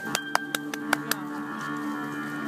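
A few scattered handclaps, about five sharp claps in the first second, over a steady held note of backing music as a song ends.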